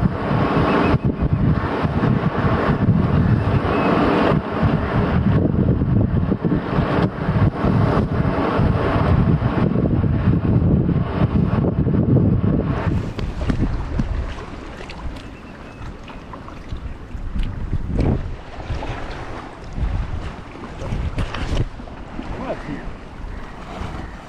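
Wind buffeting the microphone, loud and steady, for about the first half. After about thirteen seconds it gives way to a quieter stretch of water lapping and a kayak paddle splashing in the sea with each stroke.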